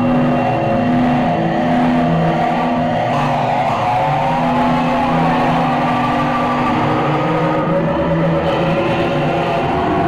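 Live psychedelic rock band playing an instrumental passage: long held electric guitar and keyboard tones over a repeating low bass figure, with a wavering, gliding tone in the middle. Heard from the audience through the theatre's sound system.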